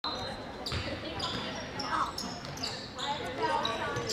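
Basketball game sounds on a hardwood gym floor: a ball bouncing, short high sneaker squeaks and the voices of players and spectators, all echoing in the large gym.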